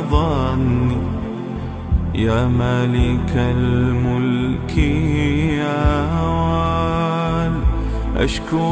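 Arabic devotional nasheed: a male voice sings long, ornamented, wavering lines over a steady low drone that drops out briefly at regular intervals.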